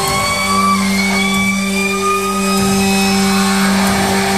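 Amplified electric guitar held in a sustained feedback drone: a steady low tone under higher tones that slowly glide upward.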